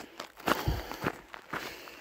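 Footsteps of a walker on a dry, gravelly dirt trail, a quick run of crunching steps with a few heavier thuds.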